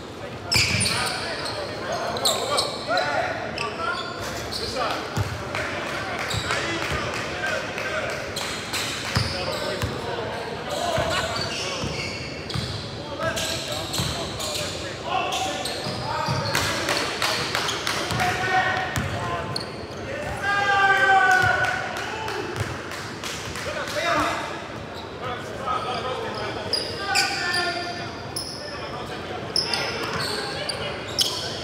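Basketball game in a large gym: a ball bouncing on the hardwood floor again and again, with players' voices calling out, all echoing in the hall. The loudest stretch, a burst of calling, comes about two-thirds of the way in.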